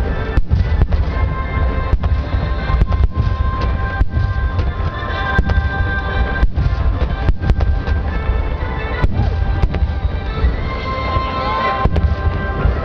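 Dense fireworks display, starmine shells and underwater fireworks bursting, with a continuous low rumble of booms and sharp cracks. Music for the show plays alongside the bursts.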